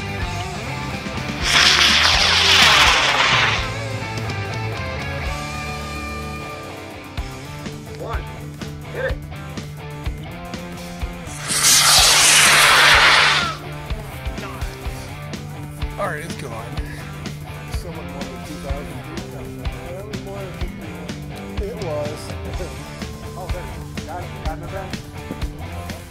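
A sugar-propellant rocket motor burning at liftoff, heard as a loud, roughly two-second rushing hiss about a second and a half in, and again about eleven seconds later, over background music.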